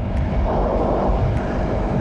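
Ride-along noise of a Yamaha YZF-R3 motorcycle cruising: wind rushing over the microphone, with the bike's parallel-twin engine running steadily underneath.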